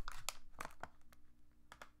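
Plastic snack-packet wrapper crinkling as it is handled: a few scattered crackles and clicks, thinning out and fading over a faint steady hum.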